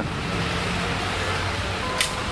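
Steady outdoor street noise: a faint hum of traffic under an even hiss.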